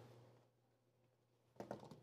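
Near silence, then a few faint, soft clicks near the end as cut apple pieces are set into a frying pan.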